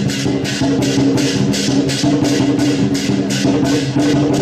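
Percussion music of the kind that accompanies a Chinese dragon dance: cymbals clash about three times a second over drumming, with steady held notes underneath.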